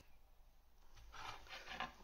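Near silence, then from about a second in a few faint, short rubbing scrapes as celery sticks and a knife are handled on a glass chopping board.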